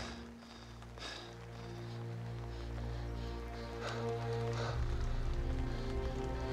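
Background film music of sustained low notes and held chords, with a few short rustling sounds about a second in and again around four to five seconds.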